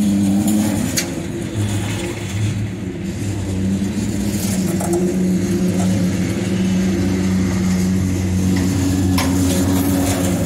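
Freight cars rolling slowly past on the track: a steady low rumble and hum of wheels on rail, with a sharp clank about a second in and another near the end.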